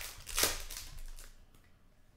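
Topps Mini Chrome football cards slid and flipped against each other by hand: two quick swishes in the first half second, then fading to faint rustling.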